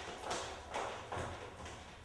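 Footsteps on a hard floor, about two steps a second.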